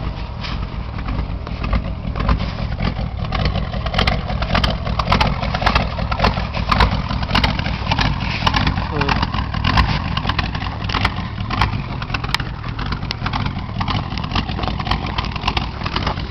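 A rebuilt Ford 302 V8 in a 1984 Ford Ranger idling steadily with a low exhaust rumble, still warming up after a cold start. Short sharp clicks and crackles run over it.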